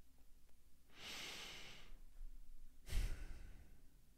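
A man breathing close to a microphone: a slow breath in about a second in, then a shorter, louder sigh out near three seconds that puffs on the mic.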